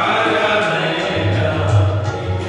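Sikh kirtan: devotional singing of gurbani with harmonium accompaniment, its chords held as steady sustained tones under the voice.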